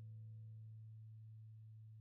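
Electric guitar's last low note ringing out faintly and slowly fading away.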